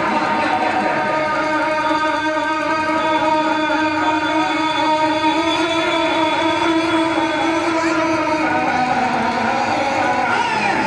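A man singing a naat, an Urdu devotional poem, into a microphone, holding long drawn-out melodic notes with a small shift in pitch about eight seconds in.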